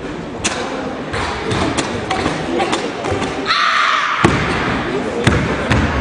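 Sharp snaps and clicks during a barefoot karate kata, then two heavy thuds about four and five seconds in as the karateka drops onto the competition mat.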